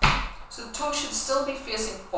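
A single foot stamp of a trainer on a wooden floor at the very start, followed by a woman's voice speaking.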